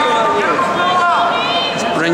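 Several voices shouting and talking over one another, with one long drawn-out shout about halfway through, typical of spectators and coaches yelling at a wrestling match.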